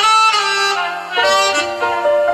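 Saxophone solo played live through the PA, its notes sliding up into pitch with a bright edge. Band accompaniment with keyboard comes in underneath about a second in.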